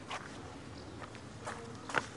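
Dancers' feet stepping and stamping on stone paving in an old Montenegrin men's circle dance, danced without music: a few sharp, spaced-out steps, the loudest just before the end.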